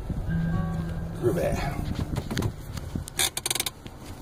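Inside a car as it comes to a stop, with the engine's low rumble under a short vocal sound, then a quick run of sharp clicks about three seconds in.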